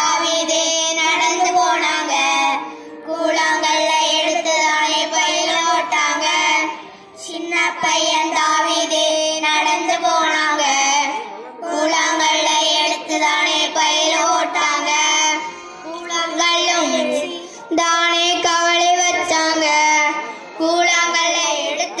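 A small group of children singing a song together into microphones, in phrases of a few seconds with short pauses for breath between them.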